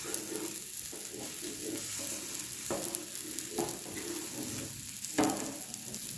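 Egg-and-bread omelette sizzling in oil on a nonstick pan while a perforated metal spatula cuts through it, with a few short scraping strokes against the pan.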